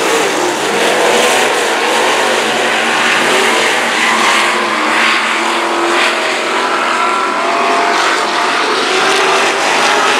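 Several IMCA stock cars' V8 engines running hard in a race, a loud blend of engines whose notes rise and fall as the cars lift and accelerate through the turns.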